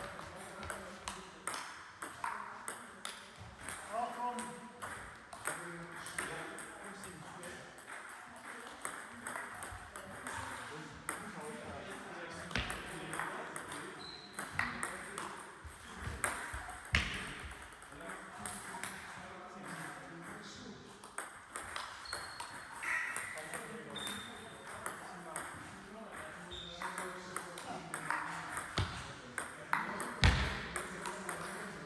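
Table tennis rallies: a light ball clicking off bats faced partly with long-pimple rubbers and bouncing on the table, in quick irregular exchanges with short gaps between points. The loudest hit comes about two-thirds of the way through.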